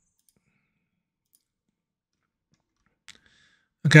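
Near silence broken by a single short computer mouse click about three seconds in.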